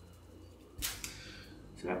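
A single short, sharp plastic click about a second in, as a thin clear plastic stiffening strip is put down on the table.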